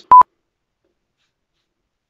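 A single short, loud electronic beep at one steady pitch, about a tenth of a second long, near the start.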